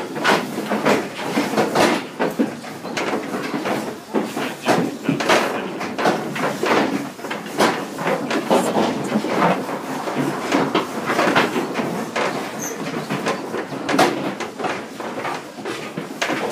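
Pigs jostling and grunting inside a metal-sided livestock trailer, with irregular clattering and knocking throughout.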